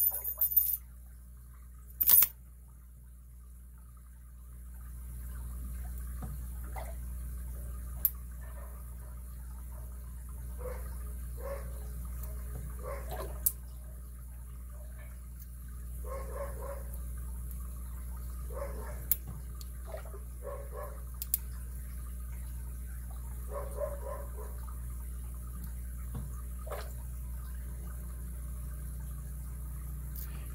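A lock pick and tension wrench working an ABUS 72/40 padlock: scattered small metallic clicks, the sharpest at the very start and about two seconds in, between stretches of soft scratching and fiddling, over a steady low hum.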